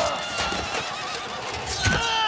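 A horse whinnying, a wavering call.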